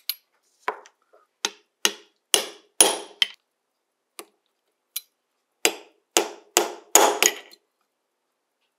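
A hammer tapping a metal punch down onto a pocket watch case part on a steel bench block: about fourteen sharp metallic taps at an uneven pace, each with a brief ring, coming faster and louder toward the end.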